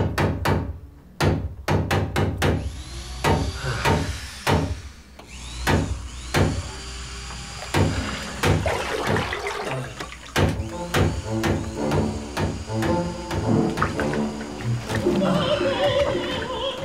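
Background music built on sharp percussive knocks at uneven spacing, with pitched instrument notes joining from about halfway through. An operatic voice with strong vibrato comes in near the end.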